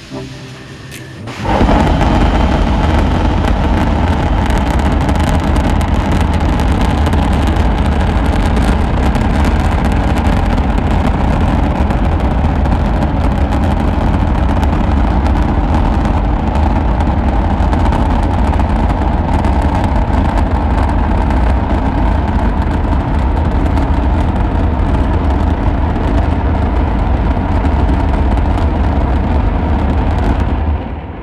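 Rocket Lab Archimedes methane–liquid-oxygen rocket engine in a hot-fire test. It ignites about a second and a half in with a sudden jump in loudness, then fires steadily with a loud, continuous, deep rushing roar.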